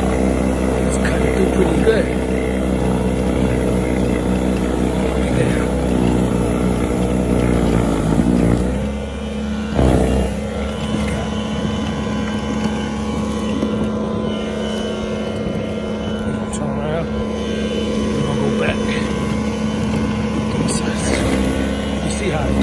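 Ryobi 21-inch brushless 40V battery snowblower running steadily as it clears snow, its electric motor and auger giving a continuous whine. The pitch dips about eight to nine seconds in, with a short knock about ten seconds in, then the whine settles again.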